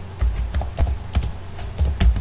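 Computer keyboard being typed, a string of separate keystrokes, about three a second, as a command is entered at a terminal. A low steady hum runs underneath.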